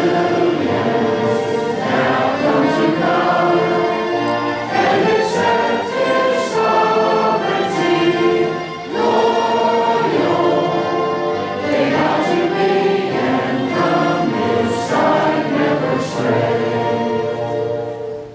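A large congregation singing a hymn together over an orchestral accompaniment, with a short breath between lines about halfway through.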